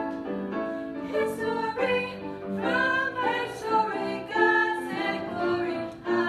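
A group of voices singing together over instrumental accompaniment, holding notes and moving from note to note.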